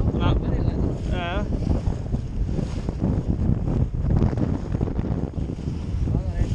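Wind buffeting the microphone aboard a small inflatable lifeboat on choppy sea, a rough, gusting rumble with water noise beneath it. A short wavering voice-like call sounds about a second in.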